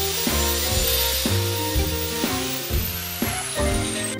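An angle grinder grinds metal over background music. Near the end its high whine falls away as the disc spins down.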